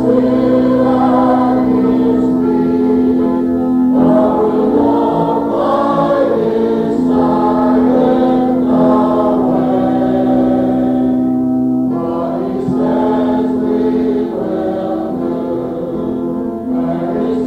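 Voices singing a gospel hymn in long held notes over sustained accompanying chords, the harmony changing about four seconds in and again near twelve seconds.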